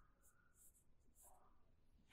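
Near silence with a few short, very faint pencil strokes scratching on drawing paper.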